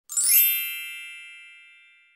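A single bright, bell-like chime struck once near the start, ringing out and fading away over about two seconds: an intro sting sound effect.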